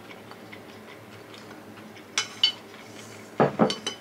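Wooden spoon knocking against a glossy bowl: two light, ringing clicks about two seconds in, then a cluster of louder knocks near the end as the spoon is set down in the bowl.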